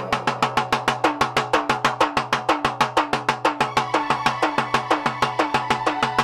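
Fast, even drumming on a rope-tensioned barrel drum (dhol), about seven strokes a second, each stroke's note dipping slightly, over a steady held note.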